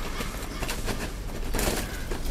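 Hands and a small knife scraping and working through soil and roots around an Encephalartos horridus sucker to free its caudex: irregular small scrapes and crackles, a little busier near the end.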